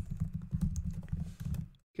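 Typing on a computer keyboard: a fast run of keystrokes that breaks off shortly before the end.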